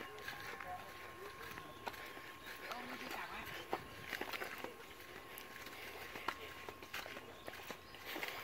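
Faint footsteps walking on a grassy dirt path, irregular steps, with distant voices in the background.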